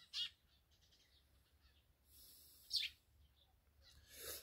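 Two short, high bird chirps over a quiet background: one sweeping down at the start, another sweeping up a little before the three-second mark.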